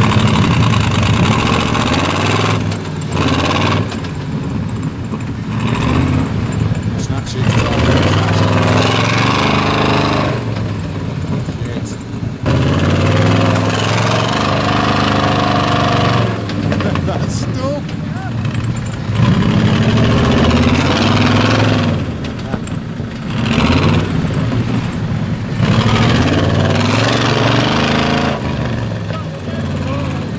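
Off-road 4x4 engine revving in several surges that rise and fall, working hard under load as a Range Rover Classic pulls a swamped Land Rover Defender 110 out of deep water on a tow strap.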